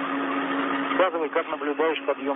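Spacewalk air-to-ground radio channel: static hiss over a steady hum, with a voice talking over it from about a second in.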